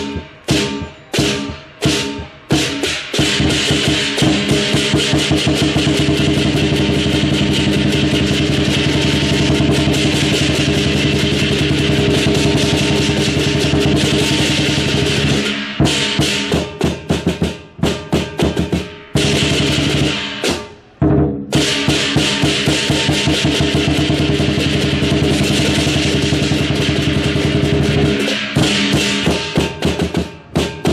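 Lion dance percussion: a big drum with clashing cymbals. It opens with separate beats about two a second, then runs into a fast continuous roll for over ten seconds, drops back to single beats, rolls fast again, and returns to single beats near the end.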